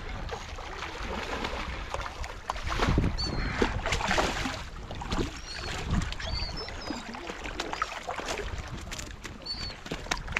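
Water splashing as a hooked fish thrashes at the rocks' edge and is grabbed by hand, loudest a few seconds in. Wind rumbles on the microphone, and short high calls from the bird flock overhead come several times.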